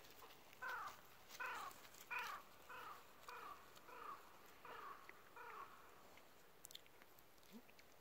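A crow cawing: a series of about eight caws, roughly one and a half a second, each falling slightly in pitch, stopping about two-thirds of the way through.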